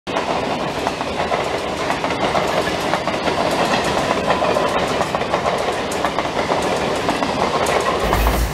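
Western Railway Mumbai suburban local train running past a platform: a steady, loud rush of wheel and carriage noise with many sharp clicks throughout.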